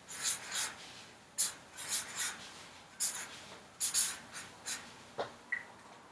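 Pen writing on paper, letter by letter: short, faint, scratchy strokes in quick little groups with brief pauses between them, and a light tick near the end.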